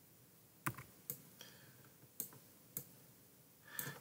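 A handful of short, sharp computer mouse clicks, about five spread over a couple of seconds, faint against a quiet room while a document on screen is scrolled.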